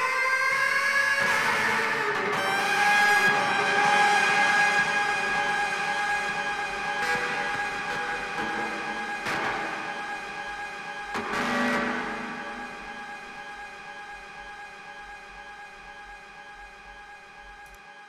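The close of a song: a held chord of several steady tones slowly fading out, with a couple of brief noisy swells partway through.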